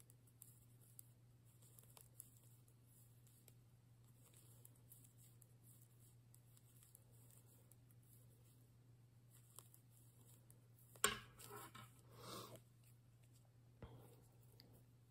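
Near silence with a low steady hum and a few faint ticks from metal knitting needles. About eleven seconds in, a sharp click followed by a second or so of soft rustling as the yarn and knitted fabric are handled.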